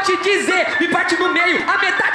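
A freestyle battle MC rapping fast in Portuguese into a handheld microphone, with a beat underneath.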